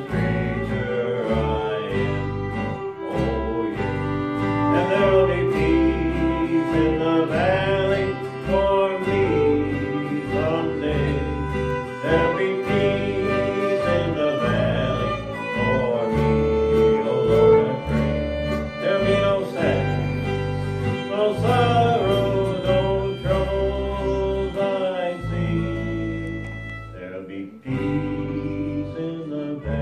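Live country band instrumental: a fiddle plays the lead melody with sliding, wavering notes over a strummed acoustic guitar and a steady bass line. The music dips briefly near the end.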